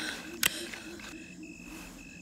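A single sharp click about halfway through, a flashlight being switched on, over a quiet background with a steady high-pitched trill that cuts in and out.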